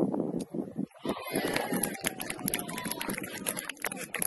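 Open-air sound at a football match in play: distant voices and scattered knocks, with a steady rushing noise that sets in about a second in.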